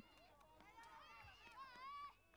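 Faint, distant shouting and calling voices, growing a little louder near the end.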